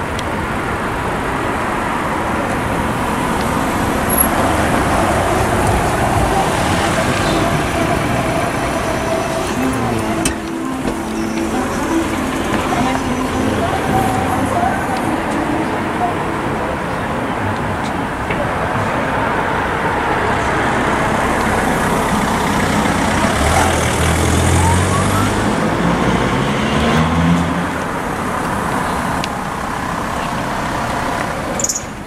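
Railway level crossing with its barriers down: the warning alarm sounds over a steady rumble of traffic and rail noise. Near the end an engine revs up, rising in pitch for a few seconds.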